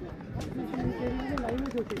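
Voices of people at the trackside, talking and calling out, with a few short sharp clicks among them.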